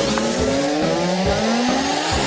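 Cartoon spaceship machinery sound effect: a loud hissing rush with an engine-like whine rising steadily in pitch.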